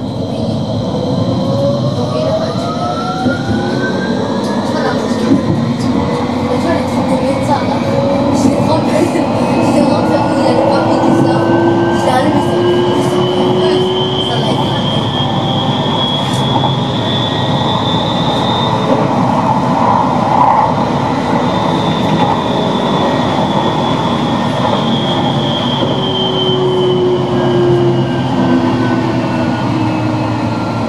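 Electric tram under way: the traction motors' whine rises steadily in pitch as the tram pulls away and picks up speed, peaks after about twenty seconds, then falls again as it slows. Underneath runs the rumble of the wheels on the rails, with occasional clicks.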